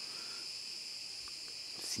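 A steady, high-pitched chorus of insects chirring without a break.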